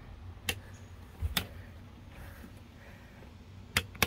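Three sharp clicks of plastic rocker switches on a boat's console switch panel being pressed to turn on the dock lights.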